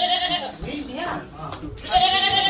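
A quavering, bleat-like animal call at the start and again at the end, with voices talking faintly in between.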